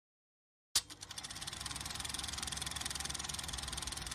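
Film projector running: a sharp click about three-quarters of a second in, then a fast, even mechanical clatter that holds steady.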